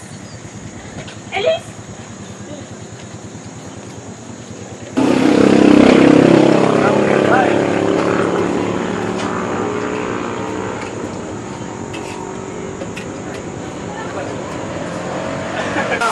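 A motor vehicle engine running. It comes in suddenly about five seconds in, is loudest just after, then slowly fades, its pitch wavering. Before it there is a low background with faint voices.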